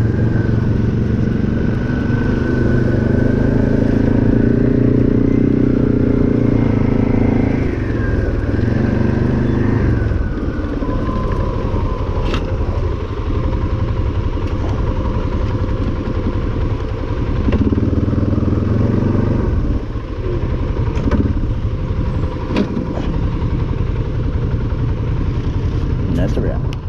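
ATV engine running at low, steady throttle as the quad rolls over gravel, its note easing down about ten seconds in. A few sharp clicks, typical of stones under the tyres, stand out.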